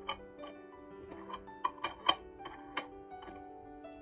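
Metal twist-off lid being screwed onto a glass jar: a series of about eight sharp clicks and ticks as the lid turns on the glass threads, the loudest a little after the middle. Soft background piano music plays under it.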